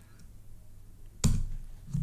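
A single sharp keystroke on a computer keyboard about a second in, with a short dull thump: the Enter key pressed to run a command.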